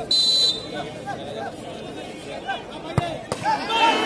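A referee's whistle gives one short blast to signal the penalty kick, over a crowd chattering. About three seconds in comes a sharp thud of the ball being kicked, and near the end the crowd starts shouting.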